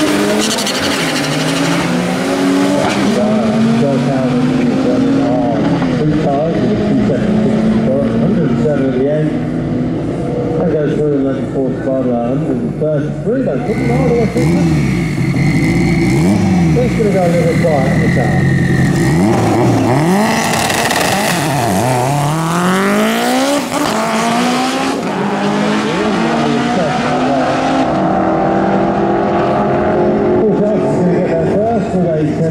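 Drag racing cars running at full throttle. A Honda Civic EG hatchback pulls away down the strip through its gears, then a pair of cars rev on the start line with a steady high whine and launch about two-thirds of the way in, engine pitch climbing steeply through each gear.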